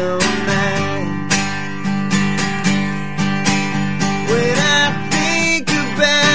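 Steel-string acoustic guitar strummed in a steady country rhythm, played live with a close microphone.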